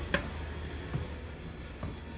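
Steady low hum of indoor room ambience, with a sharp click just after the start and a couple of fainter knocks later on.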